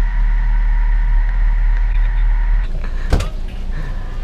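A car's low running rumble with a steady hum, close to the microphone, that cuts off abruptly a little before three seconds in. A single sharp knock follows a moment later, like a car door or body panel being struck.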